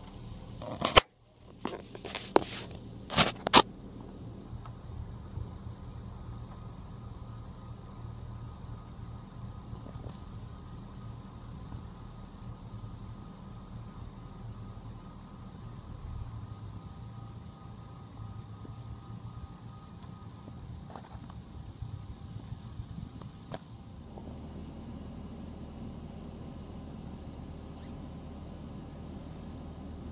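A few sharp knocks and clicks in the first few seconds, then a steady low hum of background noise with a couple of faint ticks.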